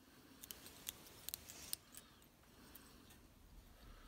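Small fly-tying scissors snipping several times in quick succession: a cluster of faint, sharp little clicks between about half a second and two seconds in.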